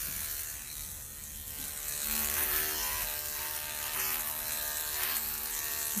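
Electric dog grooming clippers running with a steady hum as they are pushed through a thick, felted mat of hair. The sound grows a little louder about two seconds in.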